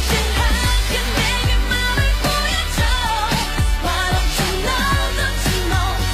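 Pop song with sung vocals over a steady beat and heavy bass.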